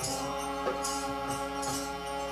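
Harmonium holding steady reed notes as kirtan accompaniment, with a jingling percussion stroke a little under once a second and a sharp drum-like knock in between.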